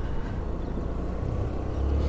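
Motor scooter riding along at a steady speed: a low, even engine and road rumble, swelling slightly near the end.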